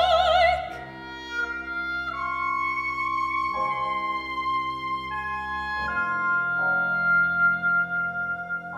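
Opera music: a singer's held note with wide vibrato ends just under a second in, then the accompaniment continues alone with sustained chords that change every second or two.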